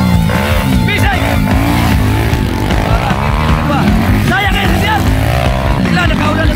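Several motorcycle engines revving up and down unevenly as the bikes labour through deep mud. Voices and music run underneath.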